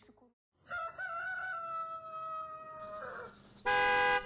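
A rooster crowing in one long, held call, the cue that morning has come. Near the end comes a short, loud, steady tone.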